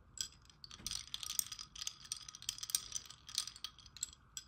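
A clear straw stirring ice cubes in a ridged glass of iced coffee: a quick, uneven run of light clinks of ice and straw against the glass.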